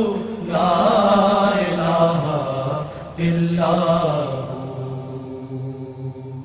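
Devotional chant of 'Allah' (zikr) sung in two long, drawn-out phrases over a steady low drone. The second phrase fades away near the end.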